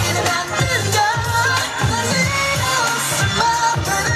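K-pop dance track with a sung vocal line over a steady beat, played through portable PA speakers.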